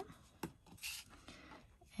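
Faint scratching of a glue tube's nozzle drawn over cardstock, with a light tick about half a second in and a short papery rustle just under a second in.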